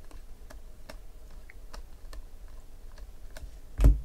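Bowman Chrome baseball cards being thumbed off a stack one at a time, a short light click with each card, about two a second. Near the end comes one much louder thump.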